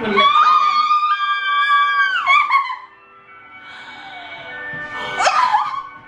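A young woman's long, high-pitched squeal of excitement that steps up in pitch about a second in and breaks off after about two and a half seconds, with laughter; a second short shriek comes near the end.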